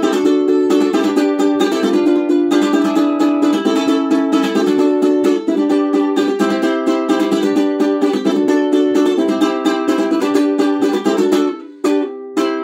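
Ukulele strummed in a steady rhythm of chords, with a brief break just before the end.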